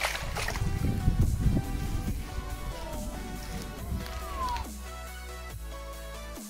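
Background music over a mirror carp splashing in shallow water at the bank during the first four and a half seconds or so, after which only the music remains.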